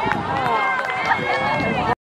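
Overlapping voices of spectators and players around a youth soccer game, calling and chattering at once, with a few sharp knocks among them.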